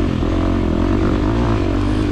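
2023 KTM 350 XC-F's single-cylinder four-stroke engine running under way on the trail, its engine speed rising and falling a little with the throttle.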